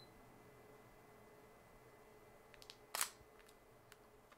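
Sony a6000 mirrorless camera's shutter firing at a slow quarter-second shutter speed: one short, quiet click about three seconds in, with a few faint ticks just before it.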